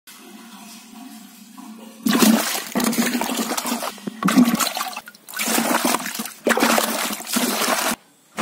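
Water splashing and sloshing in a bucket holding a live snakehead fish. It starts about two seconds in and comes in four long bouts with short breaks between them.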